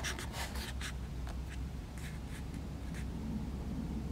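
Fingers rubbing and tapping on a Canon EOS Rebel SL2 (200D) camera body, picked up by the camera's own built-in microphones as handling noise. There are several short scratches in the first second and a half, then fewer, over a steady low hum.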